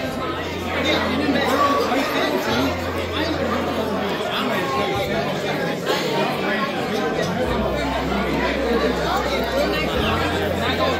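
Many people talking at once at tables in a large hall: a steady babble of overlapping conversation with no single voice standing out.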